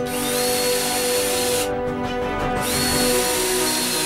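Cordless drill run twice into 3/8-inch plywood, each run spinning up to a steady high whine and lasting about a second and a half, with a short pause between. Background music plays underneath.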